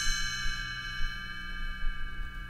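Read-along record's page-turn chime ringing on after being struck, a bell tone of several pitches held and slowly fading: the signal to turn the page.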